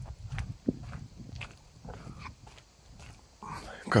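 Footsteps while walking outdoors, about one a second, over a low wind rumble on the microphone. A man's voice starts near the end.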